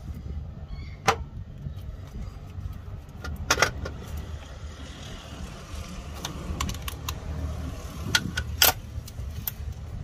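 Scattered sharp clicks and clinks of hands working plastic wiring connectors and metal terminals off a van's alternator, the loudest about a second in, a cluster around three and a half seconds, and one near the end. A steady low rumble runs underneath.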